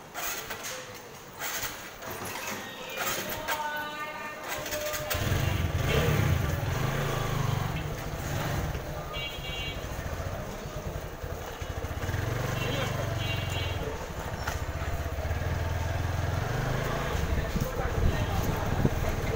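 Motorcycle engine running as the bike moves off and rolls slowly, a low uneven rumble that starts about five seconds in. Street voices are heard around it.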